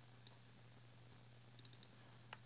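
Faint computer mouse clicks over near silence: a single click about a quarter second in, then a quick run of about four clicks near the end as a folder is opened.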